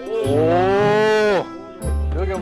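A single long drawn-out call, rising and then falling in pitch, lasting about a second and a quarter and cutting off a little past halfway. Background music with a low beat plays underneath.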